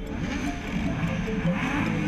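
Background music mixed with sport motorcycle engines revving as the bikes pull away, the engine noise swelling about a second and a half in.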